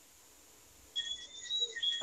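Near silence, then about a second in a faint, high-pitched insect trill comes in, thin and steady with short breaks.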